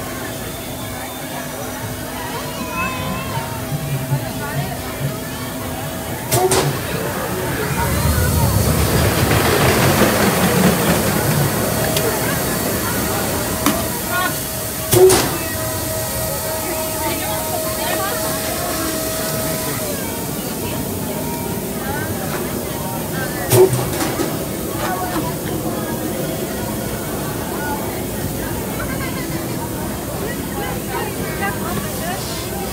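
Busy outdoor amusement-area ambience: background voices and music, with a broad rushing swell of noise about a third of the way in. Three sharp pops cut through it, spread across the stretch, and the middle one is the loudest.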